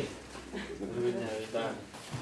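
Low, indistinct voices speaking as people greet one another and shake hands.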